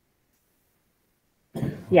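Silence for about a second and a half, then a short cough near the end, running into speech.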